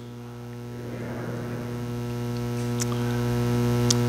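Steady electrical mains hum with a buzzy stack of overtones, gradually growing louder.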